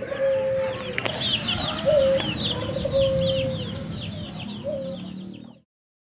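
Frizzle hen clucking in long, low, drawn-out notes while her chicks keep up a rapid stream of short, high, falling peeps. The sound cuts off abruptly near the end.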